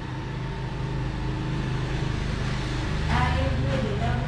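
A steady low machine hum, with a person's voice about three seconds in.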